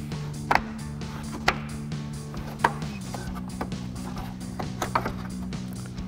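Plastic lever clips on the underside of a Ford Bronco fender flare being released by hand: three sharp clicks about a second apart, then a few fainter ones.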